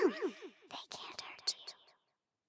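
Whispering ghostly voices in a layered horror soundscape: a voice ends on the word 'around' about half a second in, then breathy whispers with sharp hissing 's' sounds fade out near the end.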